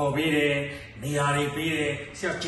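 A man's voice in Burmese, delivered as two long, level-pitched phrases with a chant-like, recited sound rather than ordinary conversational speech.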